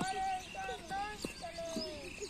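A cricket bat striking a ball with one sharp knock right at the start, followed by children shouting in high, drawn-out calls.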